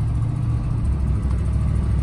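1968 Chevrolet Camaro's engine running as the car is driven slowly, heard from inside the cabin as a steady low rumble.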